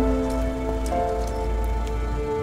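Soft music of held notes whose chord changes about a second in, over steady rain on pavement with scattered drip ticks and a low rumble.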